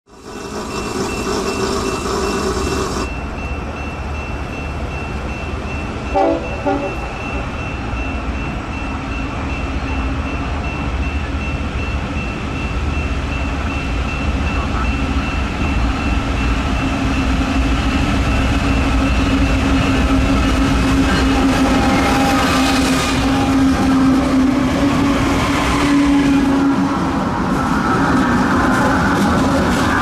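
Diesel-hauled BNSF freight train approaching and passing: the locomotive's engine drone grows louder throughout, with a short double blast of the horn about six seconds in. A steady high ringing, the crossing bell, runs through the first two-thirds, and the rumble and rush of the locomotive and cars on the rails swells near the end as it goes by.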